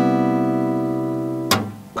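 A Cmaj7 chord on a Crafter Kage-18 acoustic guitar, strummed and left ringing steadily, then cut short by a sharp click about one and a half seconds in, after which it fades.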